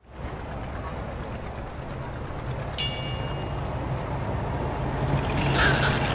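City street traffic ambience: a steady low engine rumble from vehicles, with a short high ring about three seconds in and more clatter building near the end.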